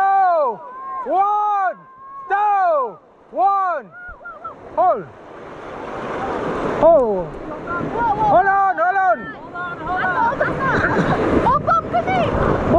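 Rafters shouting wordless calls, about one a second, each rising and falling in pitch. From about five seconds in, the rush of whitewater rapids builds and becomes the loudest sound, with more short shouts over it as the raft runs the rapid.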